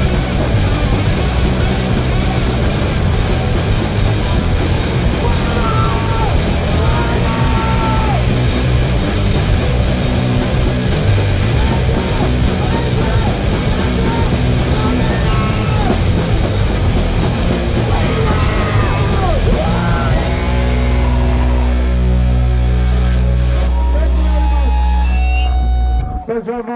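Hardcore punk band playing live: distorted electric guitars, bass and fast drums under shouted vocals. About 20 seconds in, the band holds one ringing chord, which cuts off abruptly at the end of the song.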